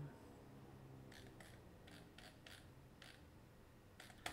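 Near silence with a string of faint computer-keyboard key clicks, about eight over two seconds, as the cursor is moved through a file.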